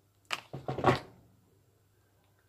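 Seasoned chicken pieces and ribs being stirred by hand in their marinade: a few short squelching noises in the first second, the last one the loudest.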